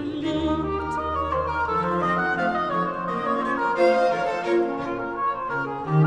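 A Baroque aria played by a period-instrument orchestra: a singer's vibrato phrase ends just at the start, then strings and continuo play on, with a low bass note held for the first couple of seconds.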